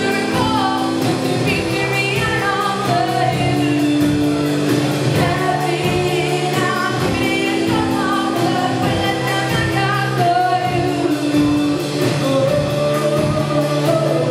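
Live rock band playing a song: electric guitar, keyboard and drum kit with a steady beat under sung vocals.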